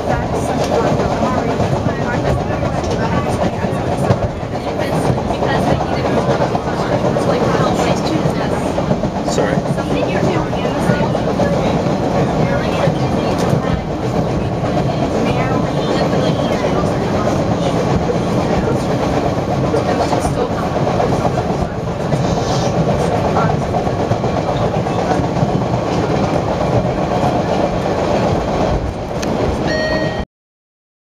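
MBTA Orange Line subway train running along the track, heard from inside the car: a steady rumble of wheels on rails.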